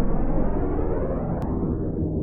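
Deep rumbling whoosh in an intro soundtrack, swelling over a low sustained drone and then fading as synthesizer tones take over.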